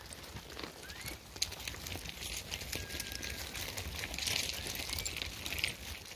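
A herd of goats walking over loose stones: many hooves clicking and clattering on rock. A few faint, short, rising whistles come through now and then.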